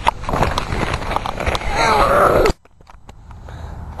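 Handling noise from a camera microphone being rubbed and knocked at close range, with a brief voice-like sound near two seconds in. It cuts off abruptly about two and a half seconds in, leaving a low, quiet background.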